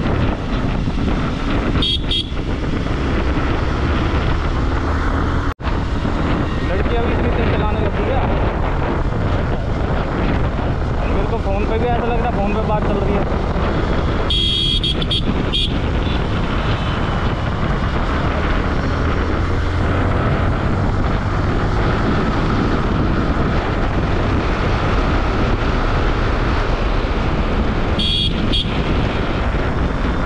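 Wind noise and engine rumble from a sport motorcycle riding at speed through city traffic, heard from a rider-mounted action camera. Vehicle horns give short honks about 2 seconds in, around the middle, and near the end.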